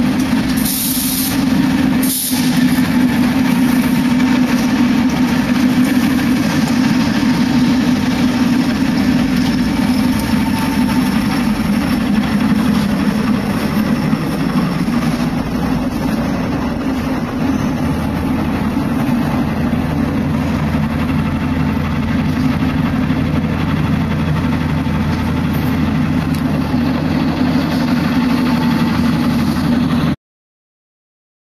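Saint Petersburg Metro train running, heard from inside the car: a steady loud rumble with a constant low hum.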